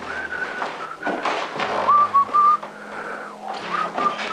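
A tune whistled in clear single notes, some held and some sliding between pitches, with short breaks. The notes are loudest just past the middle.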